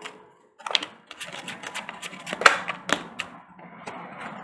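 Tarot cards being shuffled and handled on a table: a quick run of papery flicks and clicks, with a few sharper card snaps, the loudest a little past halfway.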